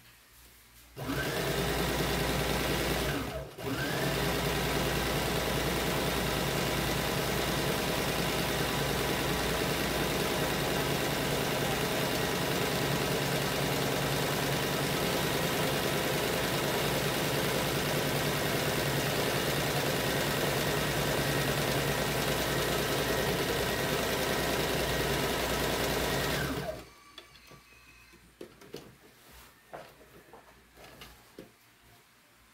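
Electric domestic sewing machine running as it stitches a seam through printed fabric. It starts about a second in, stops for a moment soon after, then runs at an even speed for over twenty seconds before stopping near the end.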